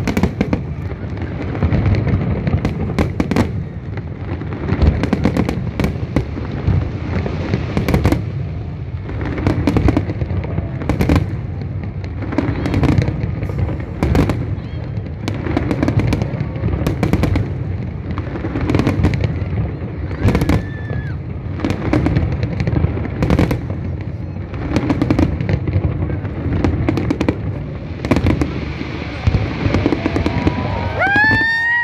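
Fireworks display: a continuous barrage of aerial shell bursts, many sharp bangs over a steady deep rumble.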